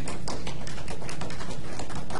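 Scattered light taps and clicks, several a second and irregular, over a steady low hum.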